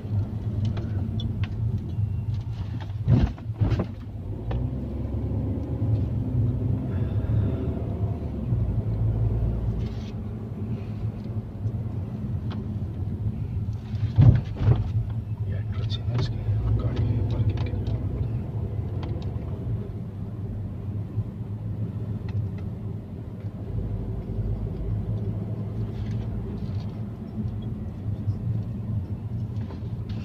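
Car cabin noise while driving at low speed: a steady low engine and road hum. Two short knocks stand out, one about three seconds in and one about halfway through.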